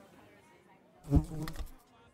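A housefly buzzing, with a sudden low thump about a second in, followed by a short pitched buzz.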